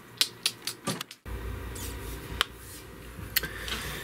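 A quick run of light clicks, about five a second, for about a second, then a steady low hum with two single clicks.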